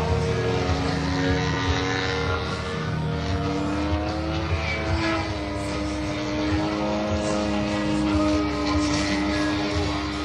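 Engine and propeller of a large-scale radio-controlled aerobatic plane in flight, a steady drone whose pitch rises a little over the first few seconds as the throttle changes. Background music plays underneath.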